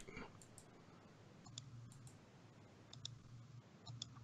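Near silence with a few faint, short clicks, in pairs about a second and a half in and about three seconds in, over a faint low hum.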